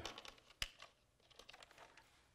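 Faint clicks and rustling of small pinned cable connectors and wires being handled and plugged into the drone's electronics, with one sharp click about half a second in.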